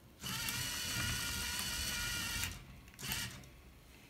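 A LEGO MINDSTORMS EV3 motor driving a conveyor of LEGO tread links: a steady whirring whine with the clatter of the links for about two seconds, then a brief second run about three seconds in.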